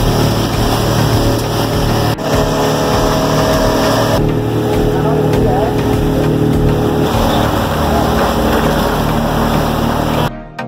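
Motorboat engine running, with loud water and wind noise on the microphone. The sound changes abruptly about two and four seconds in, as one short clip of the ride follows another.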